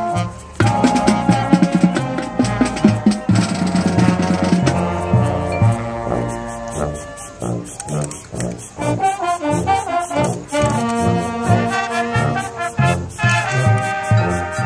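High school marching band playing its field show, brass carrying the melody over a steady beat. After a brief drop the full band comes in loudly about half a second in, eases off a little past the middle, then builds again.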